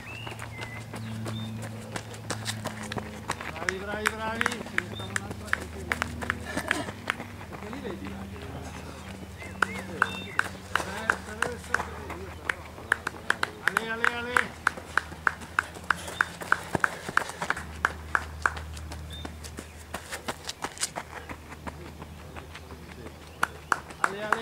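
Running footsteps on a gravel road, a steady beat of about three steps a second through the middle stretch, with shouting voices of spectators around them.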